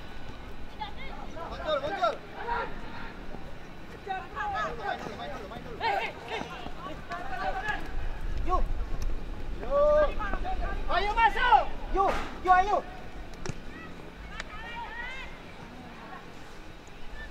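Distant shouting voices from around a youth football pitch during play, several calls overlapping, busiest and loudest from about ten to thirteen seconds in.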